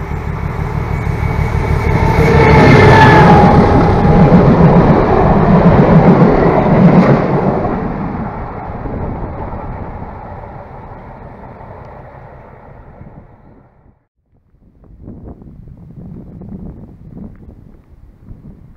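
Class 749 diesel locomotive hauling a passenger train past: engine and running noise build up, peak for a few seconds with the engine's pitch dropping as it goes by, then fade away as it recedes, dying out about fourteen seconds in. A fainter, uneven noise follows.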